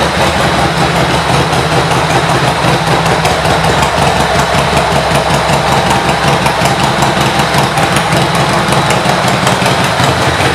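1988 Harley-Davidson Sportster 883's air-cooled Evolution V-twin engine idling steadily.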